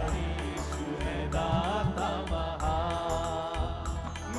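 Live Christian worship song in Hindi: several male voices singing into microphones over a band of keyboard, electric guitar and bass, with a steady beat.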